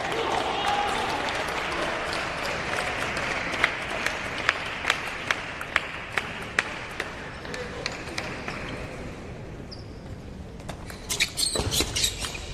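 Applause and hall noise dying away over the first several seconds, with scattered sharp clicks of balls in the hall. About eleven seconds in, a table tennis rally starts: a quick run of sharp clicks of the celluloid-type plastic ball on rubber paddles and the table.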